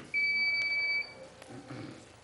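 An electronic beep from a podium speaking timer: one steady, high, piercing tone lasting about a second, marking the end of a public speaker's allotted time.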